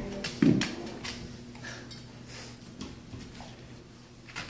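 A plate set down on a tile floor with a knock about half a second in. Then a chocolate Labrador retriever eats from it, with scattered small clicks of teeth and muzzle against the plate.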